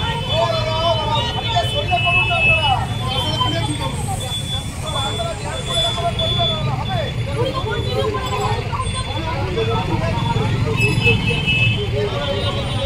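Street traffic with several people's raised, overlapping voices arguing after a road collision, over a steady low engine rumble of stopped vehicles. Short high beeps sound near the start and again near the end.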